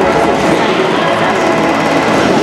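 Competition trampolines' beds and springs rattling as two gymnasts bounce in unison, over steady crowd chatter in a large hall.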